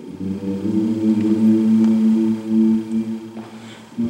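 An a cappella vocal group singing a low, sustained wordless chord, with deep voices to the fore. It swells after the start and fades away shortly before the end.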